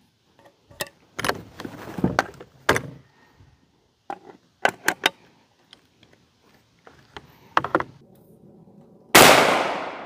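Metal clicks and handling noise from a side-by-side shotgun's break action being worked, then one very loud 12-gauge birdshot shot about nine seconds in, its report dying away over about a second.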